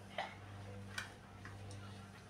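Three faint, sharp clicks, the loudest about a second in, over a steady low hum.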